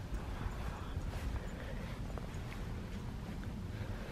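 Footsteps and handheld camera handling noise: an uneven low rumble with a few faint clicks.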